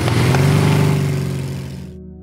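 Motorcycle engine accelerating, its note rising and then holding steady. It cuts off abruptly near the end.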